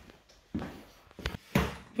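A few light knocks, then a heavier thump about one and a half seconds in.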